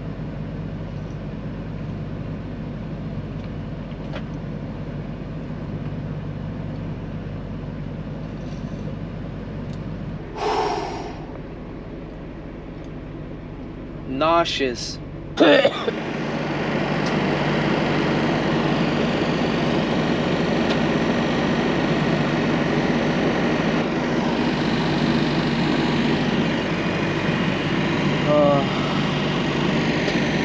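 Steady hum inside an idling semi-truck cab. About halfway in, after a short laugh, a louder, even fan-like rush takes over and runs on.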